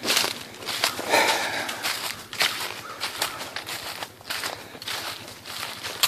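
Footsteps crunching through dry fallen leaves on a forest floor at a steady walking pace.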